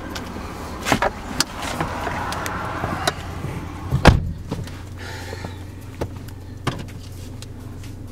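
Car door clicks and knocks as the driver's door is opened and handled, with a loud door shut about four seconds in and a few lighter clicks after it. A steady low hum runs underneath.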